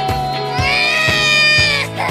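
A baby crying: one long, high wail starting about half a second in and breaking off just before the end, over background music with a steady beat.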